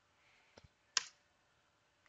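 Computer keyboard keys clicking: two soft ticks, then one sharp, louder key strike about a second in, the Enter key pressed to run the command.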